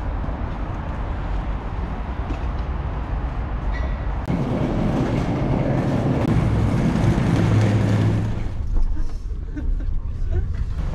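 Wheeled suitcases rolling over a concrete underpass floor: a low, heavy rumble that starts about four seconds in, grows louder, and stops shortly before the end.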